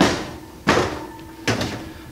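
An LG oven door being pushed back onto its hinges and worked shut and open: three sharp metal clunks, less than a second apart.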